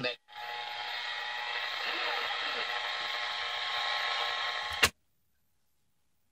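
Zenith Trans-Oceanic H500 tube shortwave radio's speaker hissing with static, faint steady tones running through it, as the dial is tuned off a station. About five seconds in, a sharp click and the sound cuts off.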